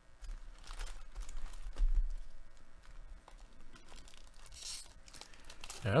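A foil trading-card pack (Panini Mosaic football) being torn open and crinkled by hand, in irregular rips and rustles, the loudest tear about two seconds in.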